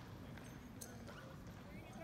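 Faint, distant chatter of people in a large hall, with a single sharp click a little under a second in.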